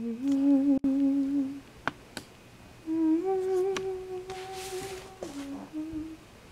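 A person humming a tune in long held notes, a lower note first, then a longer, higher one, then a few short notes, with a few sharp clicks in between.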